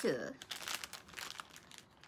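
Foil packaging crinkling as it is handled and turned over, a run of short crackles that grows fainter toward the end.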